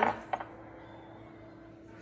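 Quiet room tone with a faint steady hum, and two light clicks shortly after the start.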